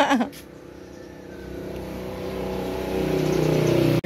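A motor vehicle's engine running, its steady hum growing louder over about three seconds as it draws near, then cut off abruptly.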